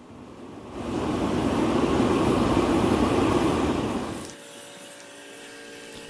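Oil burner firing a foundry furnace: a steady rushing noise that builds up about a second in and falls away a little after four seconds. It leaves a quieter steady background with a few faint held tones.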